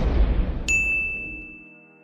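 An explosion sound effect dying away into a low rumble. About two-thirds of a second in, a single bright ding starts and rings on as one steady high tone, a score chime.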